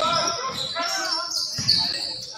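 A basketball bouncing on a hardwood gym floor during play, heard in a large, echoing gym with voices.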